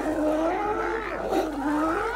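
California sea lions barking, their calls running together without a break and wavering up and down in pitch.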